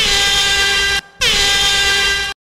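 A horn sounding two long, loud, steady blasts of about a second each, with a short break between them. The second blast cuts off suddenly.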